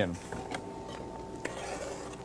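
Faint taps and scraping of a chef's knife and hand on a glass cutting board as chopped onion is gathered up. A voice trails off at the very start, and a thin steady tone runs faintly until about one and a half seconds in.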